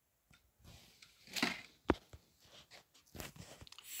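Faint handling sounds of a DVD box and its cardboard slipcover: a short rustle about a second and a half in, then one sharp click, then scattered light ticks near the end as the box is set down on the carpet.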